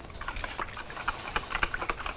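Metal spoon stirring a thin soy-and-vinegar dipping sauce in a plastic deli container, making quick, irregular clicks and taps against the container.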